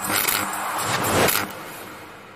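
Logo-reveal sound effect: two swelling whooshes with a jingly shimmer, the second cutting off about one and a half seconds in and leaving a fading tail.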